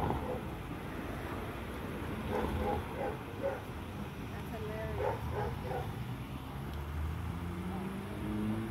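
Low steady rumble of an idling police car engine, with faint, indistinct voices talking a short way off a few times.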